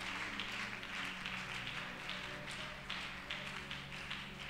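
Soft, sustained low background music in a church hall, with scattered claps and taps over a faint murmur from the congregation.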